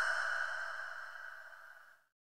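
Fading echo of a male Qur'an reciter's just-ended sung phrase through the hall's amplification, dying away by about a second and a half in.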